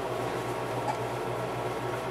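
Steady low hum with an even background hiss: room noise from a running appliance or fan.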